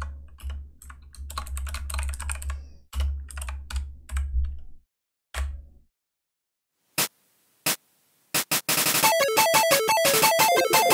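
Typing on a computer keyboard, a quick run of key strokes for about six seconds. After a short pause come two separate clicks, then upbeat video-game-style electronic music starts about eight seconds in and keeps going.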